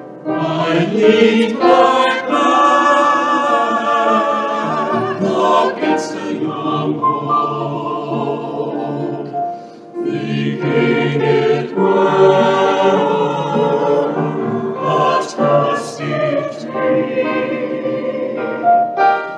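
A choir singing a slow song in sustained phrases with vibrato, with a short breath between phrases about five seconds in and another about ten seconds in.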